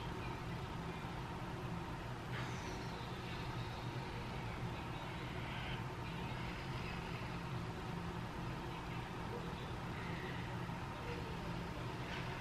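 A steady low background hum. A faint hiss rises over it from about two seconds in and lasts a few seconds.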